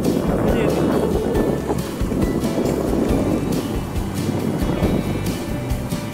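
Wind rushing over the microphone and rumble from a vehicle moving along a dirt road, with music playing underneath.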